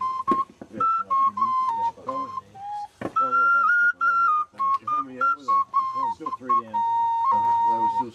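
A flute-type wind instrument playing a tune of short stepped notes, with one long held note near the end, over people talking.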